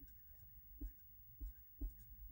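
Faint felt-tip marker strokes scratching on paper as a word is written, a few short separate strokes with small pauses between them.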